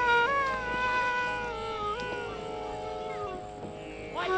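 Bansuri (bamboo side-blown flute) playing a slow phrase of long held notes joined by pitch slides. The phrase steps down and fades out about three seconds in.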